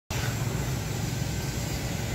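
Steady low rumble of road traffic and vehicle engines.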